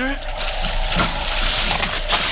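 A steady rushing noise from an old-time radio drama's sound effects, with faint voices beneath it.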